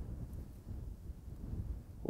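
Faint, uneven low rumble of light wind on the microphone.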